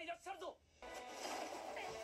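A shouted line of dialogue from the anime's Japanese soundtrack, then music comes in with a rushing noise under it just under a second in.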